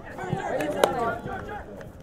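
Players and spectators shouting during a Gaelic football match, with a single sharp smack about a second in that is the loudest sound.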